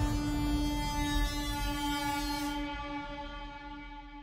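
Title-card transition sound effect: one held, horn-like note with a rushing noise under it. The rush thins out a little past halfway and the note fades away near the end.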